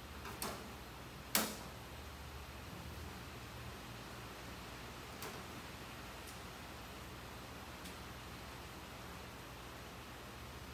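A few sharp clicks and taps of small metal objects being handled on a workbench: two near the start, the loudest about a second and a half in, then fainter ones spaced a second or two apart. A low steady hum runs underneath.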